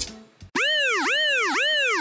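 Cartoon-style sound effect: a string of pitched boing-like swoops, each rising and falling, about two a second, starting about half a second in. The last few sink lower in pitch.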